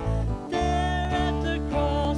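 A small live worship band playing a hymn: strummed acoustic guitar and electric bass under voices singing.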